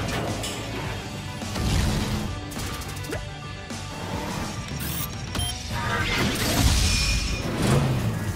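Cartoon action soundtrack: music mixed with mechanical clanking and crash sound effects, with a burst of rapid clicks in the middle and a rising noisy swell near the end.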